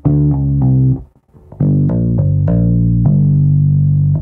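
Electric bass guitar played with pull-offs: each string is plucked once and the fretting fingers pull off to lower notes on the same string, so several notes sound from one pluck, with a different attack from plucked notes. There are two phrases, a short one and then, after a brief gap, a longer one whose last note rings out.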